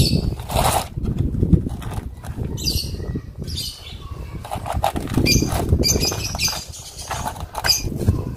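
Hands handling plastic bottle planters and potting soil while setting a petunia seedling: irregular crackling and rustling of thin plastic, with a low rumble underneath.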